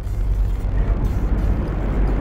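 A loud, steady low rumble with a hiss over it.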